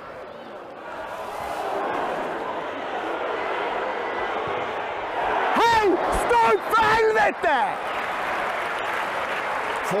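Football stadium crowd noise, a steady hubbub that swells about a second in, with a man on the touchline bellowing a few loud shouts at the players around the middle ("Stå upp för helvete!").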